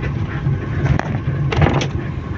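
Bus engine running with road noise, heard from inside the moving bus as a steady low rumble, with a few short clicks near the middle and toward the end.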